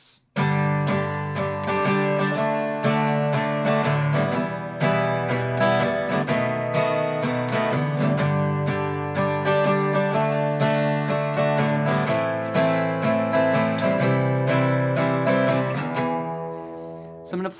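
Steel-string acoustic guitar strummed in a busy, steady rhythm through a chord progression, starting just after a brief silence. The chords change every few seconds as the chorus progression goes by.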